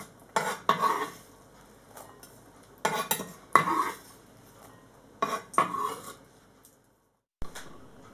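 A chef's knife scraping diced apple across a wooden cutting board and pushing it into a glass bowl, in three sweeps, each starting with a sharp knock followed by a short rattle of falling cubes.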